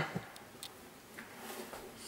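Quiet kitchen handling noise: a few light clicks and taps as a spoon, a bowl and plastic food boxes are handled on a counter.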